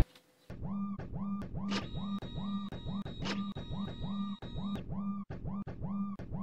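Repetitive synthesized electronic pulses, a little over three a second, each starting with a quick upward bend in pitch, with a few sharp clicks near the end.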